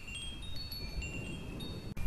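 Soft chimes: several thin, high ringing notes at different pitches, sounding one after another and overlapping.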